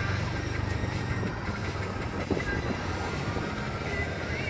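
Steady low rumble of a running vehicle engine, with a short knock a little over two seconds in.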